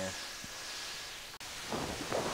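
Steady hiss of background noise, briefly cut off about one and a half seconds in, then a short rustle with a low thump just before the end.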